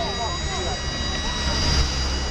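Road traffic running past with a steady low rumble that swells slightly near the end, under brief chatter from passers-by.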